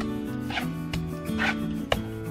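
Background music with a steady stepping melody, over a steel trowel scraping and smoothing wet cement on a wall in two short strokes about a second apart, with a sharp click near the end.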